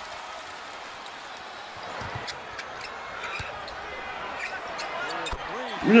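Basketball arena crowd noise from a game broadcast, a steady murmur with a basketball bouncing on the hardwood court and scattered short sharp sounds in the second half.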